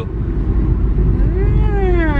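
Steady low road and engine rumble inside a moving car's cabin. About a second in, a voice gives one drawn-out sound whose pitch rises and then falls.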